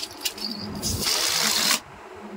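A short rush of hissing air lasting about a second that cuts off suddenly, after a couple of sharp clicks at the start.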